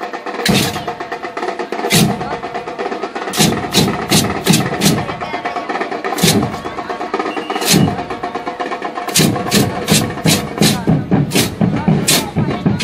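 Marching percussion band playing a beat: deep drum hits under sharp, bright metallic strikes, with a steady held note running beneath. The strikes come faster and denser in the last few seconds.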